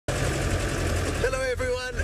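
Open game-drive vehicle's engine running with a steady low rumble; a man's voice comes in a little over halfway through.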